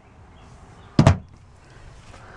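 A pantry cabinet door shutting with a short knock about a second in.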